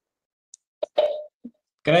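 A short, sudden sound about a second in, fading quickly, with a few faint clicks around it; then a man starts speaking near the end.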